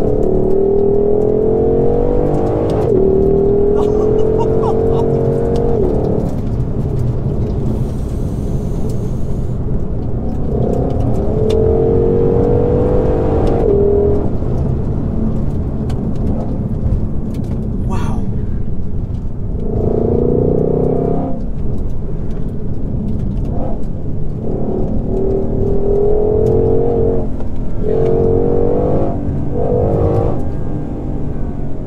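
Ford Shelby GT500's supercharged V8 heard from inside the cabin under hard acceleration: the engine note climbs in pitch for a few seconds and drops back suddenly at each upshift, several pulls in a row over a steady low road rumble.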